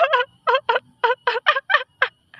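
A rapid run of short, high squealing calls, about four a second, each cut off sharply.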